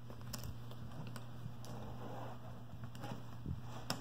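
Soft taps and clicks of cardboard jigsaw puzzle pieces being handled and pressed into place on a table, a few separate clicks with the sharpest just before the end, over a steady low hum.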